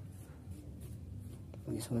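Fingertips scratching and rubbing at burnt SD card residue on a wooden tabletop, a few faint light scrapes.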